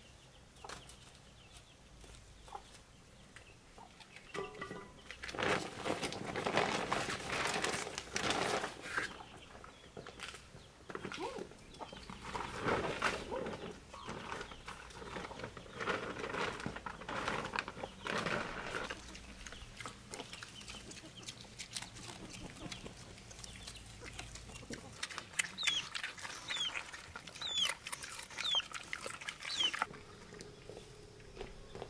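Chickens clucking in a farmyard, busiest through the first half, with several short, high, falling bird chirps near the end.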